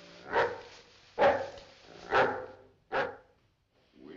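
A dog barking four times, about a second apart.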